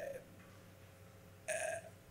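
A man's drawn-out hesitation "uh" trailing off at the start, then a pause of quiet room tone. About one and a half seconds in comes one short throaty vocal sound from him, under half a second long.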